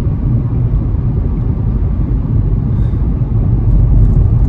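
Steady low rumble inside a car's cabin while driving: engine and road noise, with no sudden events.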